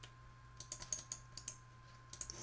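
Faint computer keyboard typing: a quick run of keystrokes lasting about a second, starting about half a second in, over a steady low hum.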